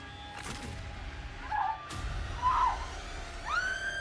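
Horror film soundtrack with music underneath, ending in a woman's long, high scream that starts near the end and is held.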